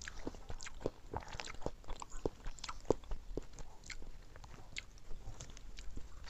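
Close-up eating sounds of people eating soft milk rice pudding: irregular wet mouth smacks and clicks, several a second.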